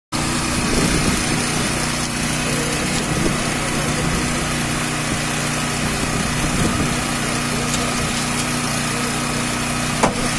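An engine running steadily at a constant pitch, with voices faintly underneath.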